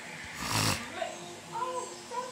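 Cartoon soundtrack playing from a television speaker: character voices, with one short, loud, hissy burst about half a second in.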